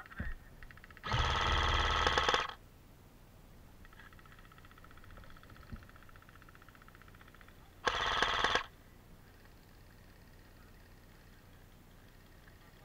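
AK-style airsoft rifle firing two full-auto bursts of rapid shots: one about a second and a half long starting about a second in, and a shorter one about eight seconds in.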